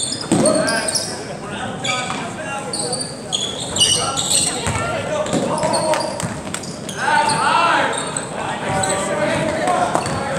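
Basketball game in a gymnasium: the ball bouncing on the hardwood floor, with short high squeaks of sneakers on the court, all ringing in a large hall.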